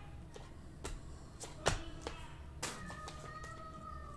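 Panini Prizm trading cards being flipped through by hand: five or so sharp card snaps as each card is slid off the stack, the loudest near the middle.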